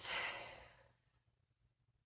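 A woman's sigh, a breathy exhale that fades out within about a second.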